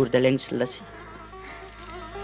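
A man's voice breaks off under a second in, and soft, steady held tones of Indian string music, a sitar-style drone, come in behind it.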